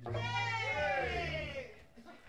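A singer's voice holding one long wavering note that rises and then falls in pitch, over a held low bass note. Both fade away about a second and a half in.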